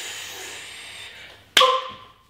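A woman blowing out a long breath, a soft hiss that fades away over about a second and a half, then a short, loud voiced sound from her near the end.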